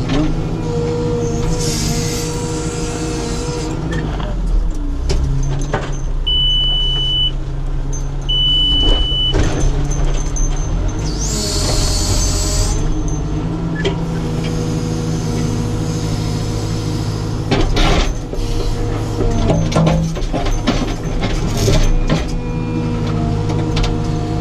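Caterpillar 432F2 backhoe loader heard from inside the cab: the diesel engine runs steadily under load while the backhoe hydraulics whine and shift in pitch as the arm digs around a large rock. Two short high beeps come near the middle, with a burst of hiss early on and another about halfway, and a few knocks toward the end.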